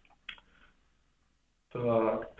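A few faint computer mouse clicks in the first half-second, then a man's voice starts near the end.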